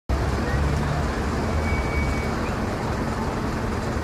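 Street ambience: steady traffic noise with the chatter of a crowd.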